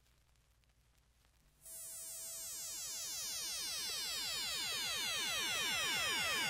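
Near silence, then about a second and a half in a buzzy electronic synthesizer tone comes in and slowly swells, its many overtones sweeping steadily downward. This is the opening of a synth-pop library track played from a vinyl record.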